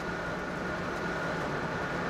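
Steady road and engine noise heard inside a moving car's cabin, an even hum with no sudden sounds.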